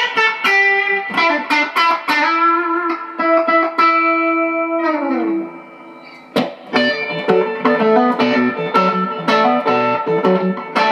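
Collings 290DC custom electric guitar played through an RDA Dualist amplifier. It plays picked single-note lines, then a held note that bends down in pitch and fades about five seconds in. After a short lull it plays a quicker phrase of picked notes.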